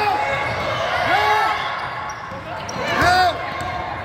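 Basketball game on a hardwood court: a ball bouncing, with three short shouted calls from players or coaches, the loudest about three seconds in.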